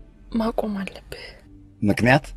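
Speech: two short spoken phrases about a second apart, the second from a man's voice, over a faint low background.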